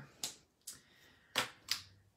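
Four sharp plastic clicks of Stampin' Blends alcohol markers being set down and picked up on the craft desk.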